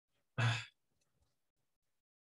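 A man sighing once, a short breath out about half a second in.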